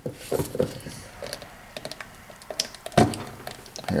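A screwdriver prying and scraping at the seam of a lawnmower transmission case, with scattered small clicks and taps and one heavier knock about three seconds in. The case halves are stuck together with RTV sealant.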